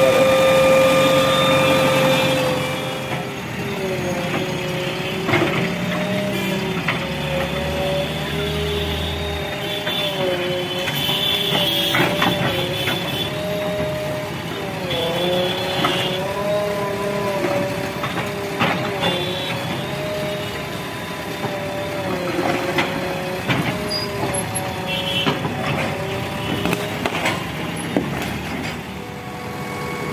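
JCB 3DX backhoe loader's diesel engine running, its pitch rising and dipping repeatedly as the hydraulics load it, with occasional sharp knocks from the bucket working.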